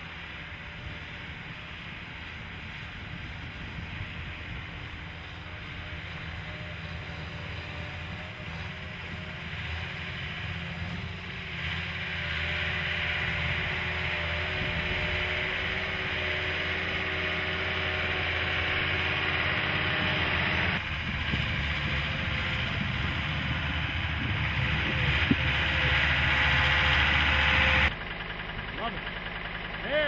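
Engine of an ALLTRACK AT-50HD tracked carrier running under load as it climbs a snowy slope, growing steadily louder, with sudden changes in the sound about 21 and 28 seconds in.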